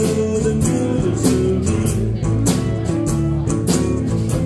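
Live band playing an instrumental passage of a country-blues song: acoustic and electric guitars over drums keeping a steady beat.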